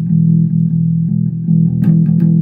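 Electric bass guitar plucked fingerstyle with alternating fingers, a steady run of low notes re-struck several times a second.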